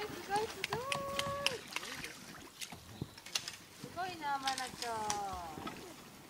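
Voices calling out with no clear words: one held call about a second in, then several falling calls near the end, with scattered clicks and knocks.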